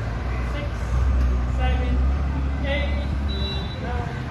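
Faint distant voices over a steady low rumble that swells about a second in and eases near the end.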